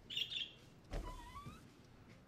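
Interior door handle turned with a latch click about a second in, followed by a short rising creak of the door's hinges as it starts to open; a brief high squeak comes just before.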